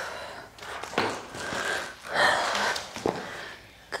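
A person breathing hard during exercise: several audible breaths in and out, with a couple of faint knocks about a second in and near three seconds.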